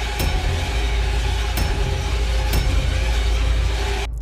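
Loud, dark horror-style title sound: a heavy low rumble and hiss with faint held tones, broken by three sharp hits about a second apart.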